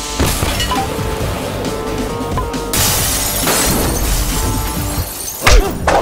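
Film background score under a fight scene, with a sudden crash about three seconds in and a loud hit shortly before the end.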